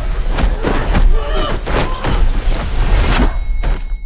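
Staged hand-to-hand fight sound effects: a quick run of heavy blows and thuds, with a body slamming to the floor, over a deep rumble. A few short effort grunts break through about a second in.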